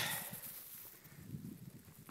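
Faint rustling and soft handling noise, with a hiss that fades away at the start.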